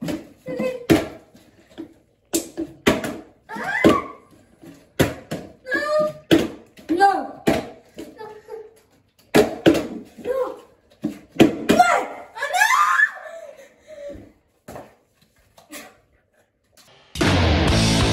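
Plastic bottles partly filled with liquid flipped and landing on a tabletop again and again, short knocks among children's exclamations and laughter. About a second before the end, loud rock music comes in.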